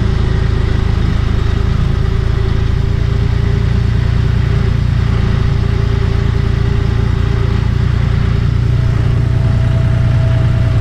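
A John Deere loader tractor's diesel engine running at a steady throttle as the tractor drives, heard close up from the tractor itself.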